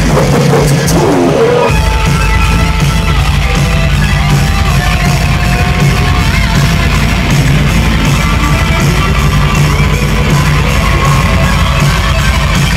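Live heavy metal band playing through a club PA: distorted electric guitars, bass and drums, loud and dense as picked up by a camera microphone. The full band kicks back in about two seconds in after a brief thinner passage, with long held guitar notes over the driving low end.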